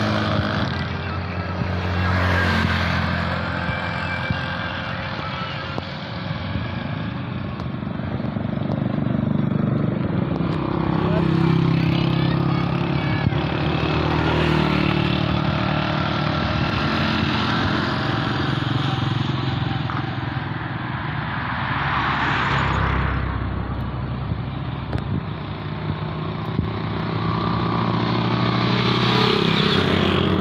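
Road traffic heard from a moving vehicle: a steady engine hum that drifts up and down in pitch, over road and wind noise, with motorcycles passing close by.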